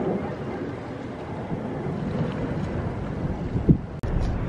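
Wind buffeting the camera's microphone, a steady low rumbling hiss, with a brief thump near the end.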